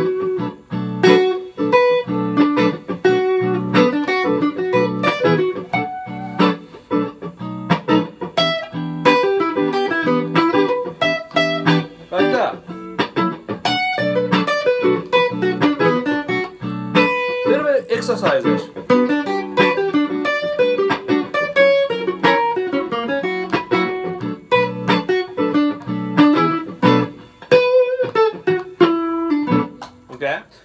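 Clean electric guitar (Kanji hardtail Stratocaster through a Fender Hot Rod Deluxe) playing a B minor blues solo built from chord triads, in quick single-note phrases over a looped chord backing held underneath.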